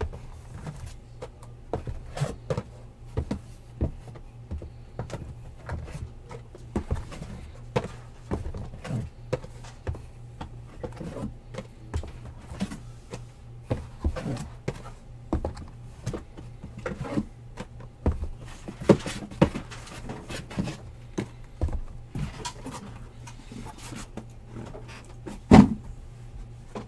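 Shrink-wrapped cardboard hobby boxes of trading cards being lifted out of a shipping case and set down on a table: a run of irregular knocks, taps and rustles of cardboard handling, with a louder thump near the end. A steady low hum runs underneath.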